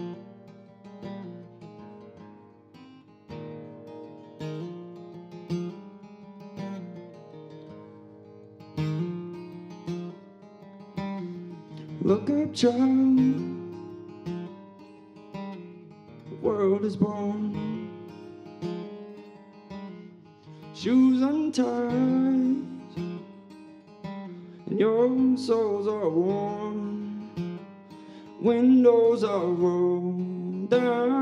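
Solo acoustic guitar playing a song's introduction in a steady picked pattern. From about twelve seconds in, wordless sung phrases come in over it roughly every four seconds.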